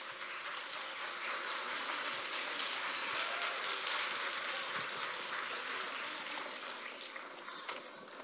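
Audience applauding, steady clapping that slowly fades over the last few seconds.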